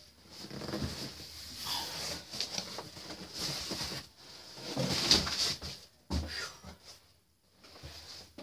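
Large cardboard shipping box being handled and pulled open: irregular scraping and rustling of cardboard flaps, loudest about five seconds in, then a thump just after six seconds.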